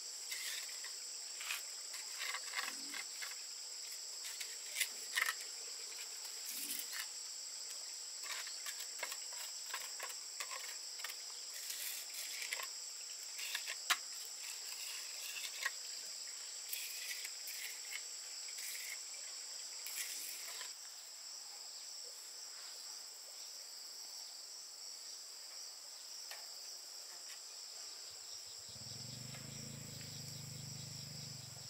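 Steady high-pitched insect chorus, with scattered clicks and knocks over the first two-thirds, then a low hum starting near the end.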